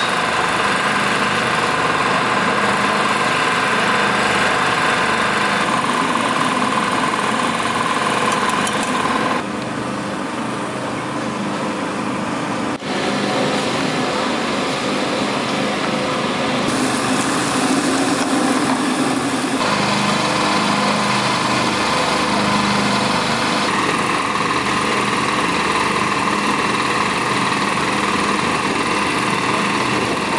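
A steady motor drone, like a small engine running continuously. Its level and tone shift abruptly several times.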